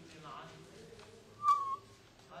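A short, high whistle-like tone, one note sloping slightly downward and lasting about a third of a second, starting with a click about one and a half seconds in; it is much louder than the faint voices around it.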